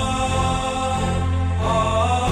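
Dramatic television background score: a strong sustained low note under held higher tones, without speech.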